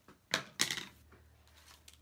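Two quick clacks with a short rustle as craft supplies are handled on a desk: a ribbon spool moved and a piece of card stock picked up.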